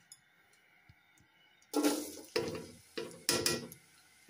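Sliced onions tipped into an empty nonstick pan: a quiet start, then a run of five quick clattering knocks on the pan in the second half.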